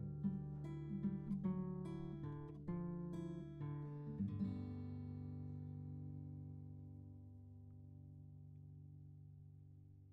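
Acoustic guitar closing the song with a short lick of picked single notes and chord stabs, then a final chord left ringing and slowly fading out.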